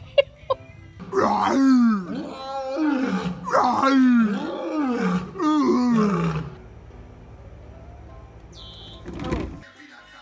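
Lion roaring: a run of about five loud calls, each sliding down in pitch, roughly a second apart.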